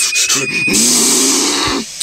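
A cartoon character's loud, raspy, growling scream of anger, lasting about a second and a half, following the tail end of a held high sung note.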